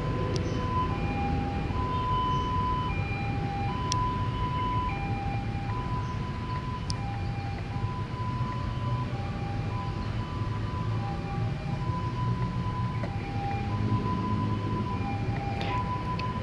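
A looping electronic two-note tune: a higher and a lower tone take turns about once a second, over a steady low rumble of outdoor background noise.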